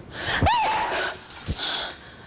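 A woman gasps in fright, a short high cry that rises and falls in pitch, followed by a breathy exhale.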